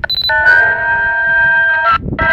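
Electronic tones coming through a Uniden radio scanner's speaker from a pirate transmission on a US military satellite channel: a short high beep with fast clicking, then a steady note of several pitches held together for about a second and a half.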